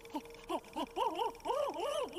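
A voice from the anime episode playing quietly underneath: a string of about six short pitched cries, each sliding up and then down. A faint steady hum runs beneath them.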